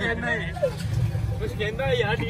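Low, steady rumble of an open rickshaw riding along a street, with voices talking over it.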